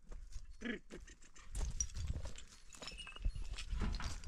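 Sheep in a pen: one short bleat just under a second in, then steps shuffling and clicking on stony ground, with a low rumble underneath.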